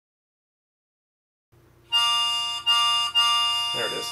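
A recorded harmonica sample played back from a Korg Volca Sample, triggered three times in quick succession about two seconds in, the same pitched sound each time. It plays out at full length now that the decay knob is turned up.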